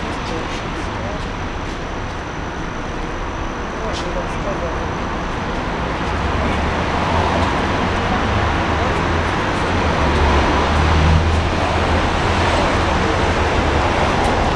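Steady city street traffic noise, with a low engine rumble that grows louder in the second half as a vehicle passes.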